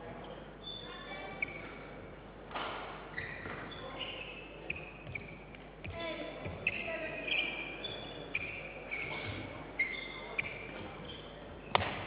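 A badminton rally: court shoes squeaking in many short chirps on the court mat, with several sharp racket strikes on the shuttlecock a second or more apart.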